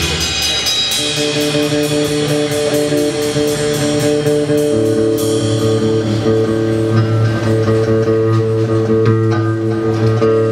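A live instrumental rock trio: guitar and bass hold long sustained notes over drums. There are rapid cymbal strokes in the first few seconds, and the bass moves to a new note about halfway through.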